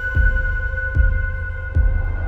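Background music: a deep, heartbeat-like pulse about every 0.8 seconds under steady held synth tones.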